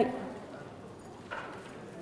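A pause between spoken words: quiet lecture-hall room tone, with one brief soft rustle or breath about a second and a half in.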